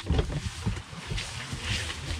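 Wind and rain buffeting and hissing on the microphone, with a few scattered knocks from handling.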